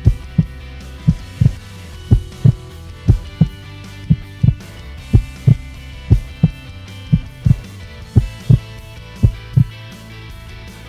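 A heartbeat sound effect, a double thump about once a second, over a sustained musical drone. The thumps stop at the very end.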